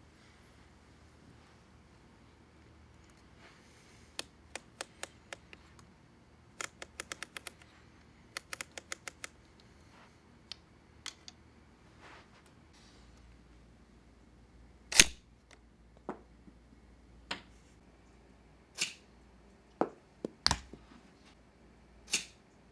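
Plastic VEX Robotics toy catapult's thumb-crank ratchet clicking in quick runs as the torsion arm is wound back against its rubber bands. About two-thirds of the way through comes a single sharp snap, the loudest sound, as the arm is released and fires, followed by several single knocks.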